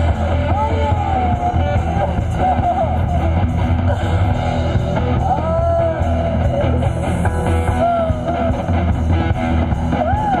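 Live rock-tinged folk band playing: electric guitar, bass and drums, with a woman's voice singing long sliding lines over them.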